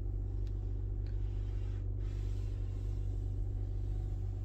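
2020 BMW X5 engine idling in park, heard from inside the cabin as a steady low hum.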